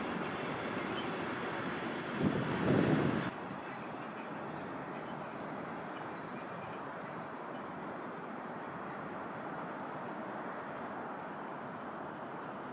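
Freight train passing: a diesel locomotive and tank wagons rumbling along the track, with a louder surge of low rumble a little over two seconds in. The sound drops off abruptly at about three seconds, giving way to a quieter, steady rolling noise of freight wagons further away.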